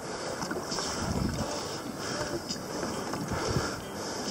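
Steady wind rushing on the microphone, mixed with water washing around a fishing kayak on open sea.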